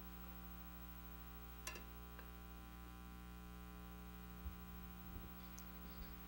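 Steady electrical mains hum with a stack of overtones, with a faint click near two seconds in and a soft low knock later on.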